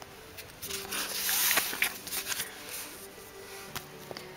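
Sticker sheets rustling and crackling as they are handled, loudest about a second in, over soft background music with held notes.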